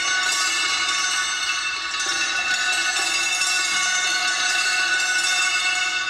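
A sustained, bell-like metallic tone with many steady overtones, held at an even level throughout without dying away.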